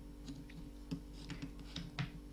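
Faint, irregular light clicks and rustle of a metal Tunisian crochet hook working loops of yarn, about five small ticks over two seconds.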